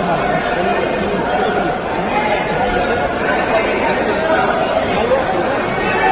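Crowd chatter: many men's voices talking over one another at once in a large indoor hall, a steady babble with no single voice standing out.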